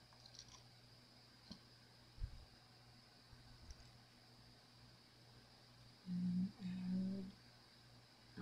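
Faint small clicks and taps of a thin stick poking cheesecloth down into a resin-filled plastic mold, with a low bump about two seconds in. Near the end, a voice hums two short, level notes.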